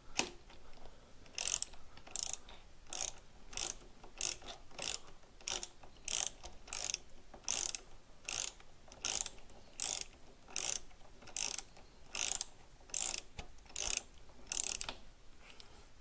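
Hand ratchet wrench clicking in short, evenly spaced bursts, about nineteen strokes one every 0.7 seconds or so, as a handlebar clamp bolt is backed out; the strokes stop about a second before the end.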